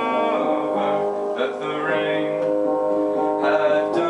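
Upright piano playing an instrumental passage of a song, chords and melody notes ringing on without a break.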